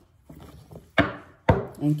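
Tarot deck handled and shuffled, then two sharp knocks half a second apart, about a second in, as the deck is tapped on the wooden desk.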